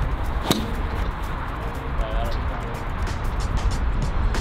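A golf club striking a ball off a driving-range mat: one sharp crack about half a second in, with a brief ring. Steady low background noise and music run underneath.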